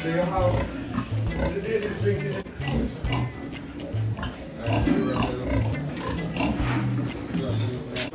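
Piglets grunting and squealing over music with a steady, pulsing bass beat.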